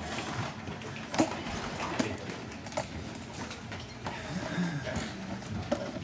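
Scattered light clicks and knocks, roughly one a second, over faint murmuring voices and room noise.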